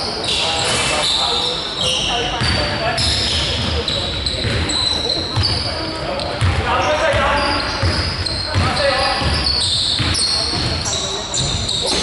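A basketball being dribbled and bouncing on a hardwood gym floor, with short high sneaker squeaks and players' shouts, all echoing in a large sports hall.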